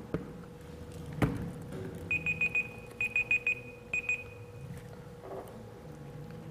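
An electronic alarm beeping: quick high-pitched beeps in groups of four, a second group of four, then a short pair that trails off just under five seconds in. A single sharp knock comes about a second in.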